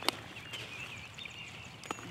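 Quiet pondside ambience with faint, brief bird chirps. Two sharp clicks, one just after the start and one just before the end, are the loudest sounds.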